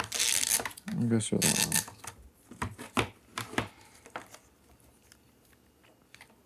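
Plastic tubes of a threaded tetrahedron model rustling and clicking as they are handled, with a few sharp clicks between about two and a half and three and a half seconds in. A brief low voice sounds about a second in.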